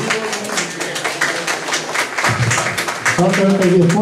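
A heligonka (button accordion) being handed from one player to the other mid-song, with a dense run of clicks and taps. About three seconds in, steady held tones start as the instrument plays again.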